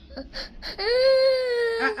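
A toddler's long whining cry, held for about a second and falling slightly at the end, after a couple of short whimpers: a protest at having her hair combed.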